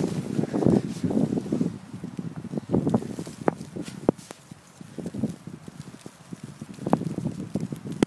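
Irregular crunching and knocking in fresh snow, coming in uneven bursts about once a second, mixed with sharp clicks of handling noise from a handheld camera.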